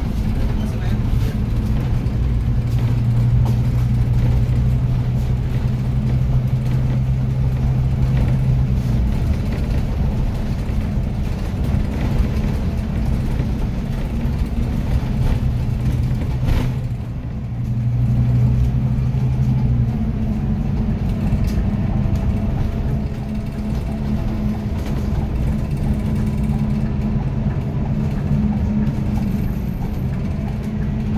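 City bus heard from inside its cabin while driving: a steady running drone with road noise. A low hum is strong for the first several seconds, fades, and swells again a little past the middle. A single sharp knock comes just before that swell.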